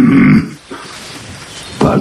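A man's short, steady hummed 'mmm' grunt of acknowledgement, ending about half a second in, followed by quiet room tone.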